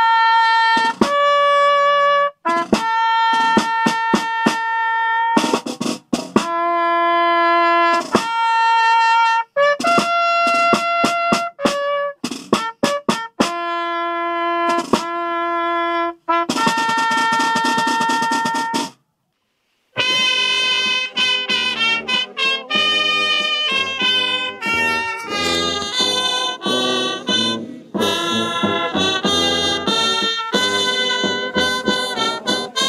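A solo trumpet plays a slow melody of long held notes. After a brief gap about two-thirds in, brass music with several instruments carries on, busier and with more moving notes.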